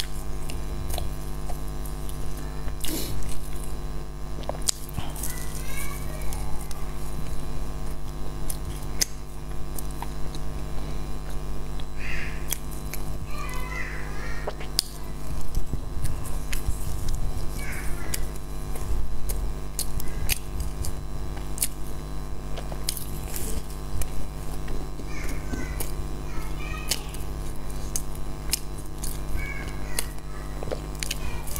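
Close-miked chewing of flaky baked pastry: scattered soft crunches, mouth clicks and smacks over a steady low hum.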